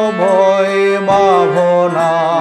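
A man singing a slow Bengali devotional song (bhajan), his voice gliding and wavering over steady held notes from a harmonium.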